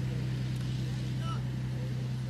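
Steady low drone of a Spitfire's piston engine in flight, held at one pitch.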